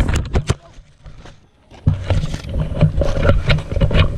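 Handling noise on a handheld action camera's microphone: a few sharp knocks, a brief drop to quiet, then a loud, uneven low rumble of wind and handling from about two seconds in.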